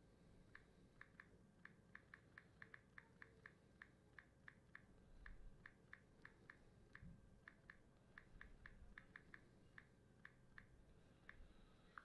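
Near silence: room tone with faint, irregular light clicks, a few each second, from about half a second in until shortly before the end.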